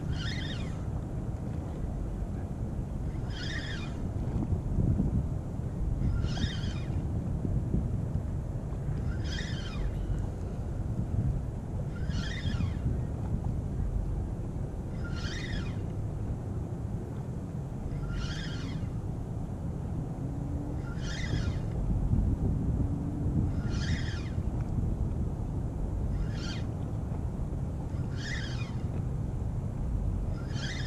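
Spinning reel cranked in short spurts, a brief whir about every three seconds, as a jig is lifted and the slack reeled in. A steady low wind rumble runs underneath.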